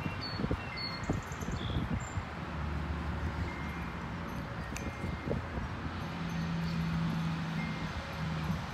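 Backyard ambience: a steady low rumble of wind on the microphone, with a few faint, high, chime-like tinkles in the first couple of seconds and a low steady hum near the end.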